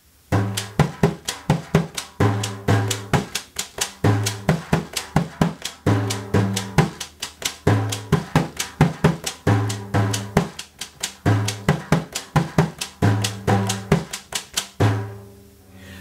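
Ocean drum played lap-style with bare hands in the eight-beat çiftetelli rhythm. Deep dum bass strokes, pa slaps and quick chick edge strikes repeat in an even cycle, stopping shortly before the end.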